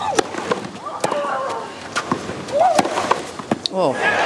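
A tennis rally on a clay court: racket strikes on the ball about once a second, several of them with a player's short grunt.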